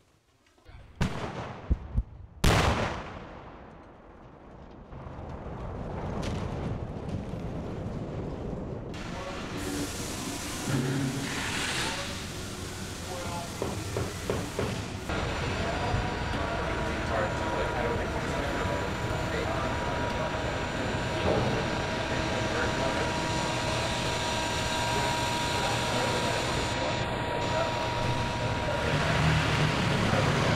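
Pyrotechnic explosions at a wooden house: two sharp blasts, about a second and two and a half seconds in, each followed by a long rumbling fade. After that comes a steady background of noise.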